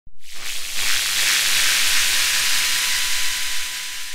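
Synthesized electronic hiss opening an intro soundtrack, with a faint steady high tone running under it. It starts abruptly and thins out near the end.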